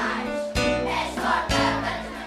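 Children's choir singing a pop song in Portuguese, voices together over a low bass accompaniment that pulses about once a second.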